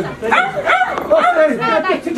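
A raised human voice, drawn out with a wavering, sliding pitch and no clear words.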